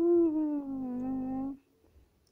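A person's voice holding one long vocal note, sliding gently down in pitch and cutting off about a second and a half in.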